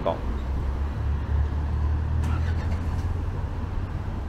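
Road traffic: a low vehicle engine rumble that grows louder about a second in and eases off after about three seconds.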